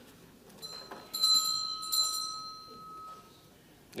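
The presiding officer's bell rings to call the assembly to order and quiet. It is struck twice, about a second in and again about a second later, and its ring fades out about three seconds in.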